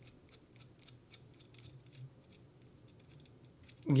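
Faint, irregular light ticks as a small 8-32 machine screw is turned by hand into the threaded hole of a crimper/stripper tool.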